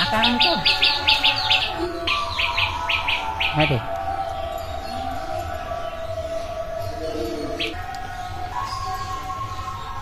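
A bird chirping in rapid runs of short, quick notes during the first three and a half seconds, then falling silent.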